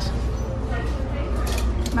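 Store ambience: a steady low hum with faint voices in the background, and a light click or two of plastic clothes hangers being moved on a rack.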